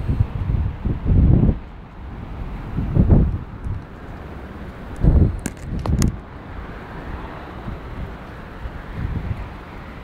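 Wind buffeting a phone's microphone in irregular low gusts, the strongest about a second in, at three seconds and around five to six seconds.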